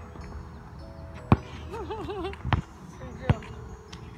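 A basketball bouncing on a hard outdoor court: three separate sharp bounces, irregularly spaced about a second apart.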